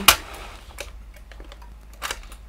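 One sharp click just after the start, then a few faint light ticks of paper and small craft tools being handled.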